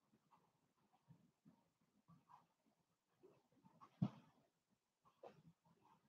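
Near silence: room tone with a few faint, short sounds, the clearest a brief knock-like sound about four seconds in.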